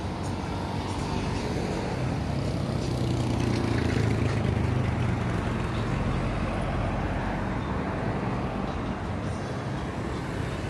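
Road traffic passing on a multi-lane road: a vehicle's rumble grows louder to a peak about four seconds in, then fades back into the steady traffic noise.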